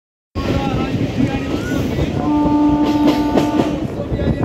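Steady running noise of a moving train heard from its open doorway, with a train horn sounding one steady note for about a second and a half starting a little past two seconds in. A few sharp knocks from the wheels come during the horn.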